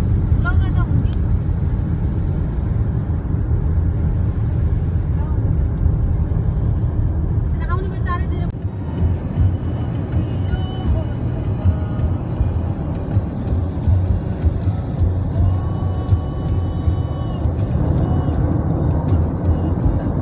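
Steady low rumble of a car driving, heard from inside the cabin. About eight seconds in, the sound shifts and faint held tones come in over the rumble.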